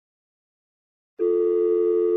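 After about a second of silence, a single steady telephone ringing tone sounds for about a second and is cut off by a click, as a call connects.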